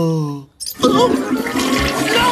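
A drawn-out tone falling steadily in pitch ends about half a second in; after a brief gap comes a loud rush of water with gurgling bubbles.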